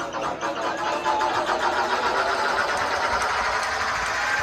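Electronic dance track over a club sound system in a bass-less build-up: a buzzy synth repeats in fast, even pulses and gets louder about a second in.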